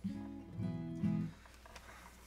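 Acoustic guitar strummed: a chord sets in suddenly, a second stroke comes about half a second in, and it rings for just over a second before dying away.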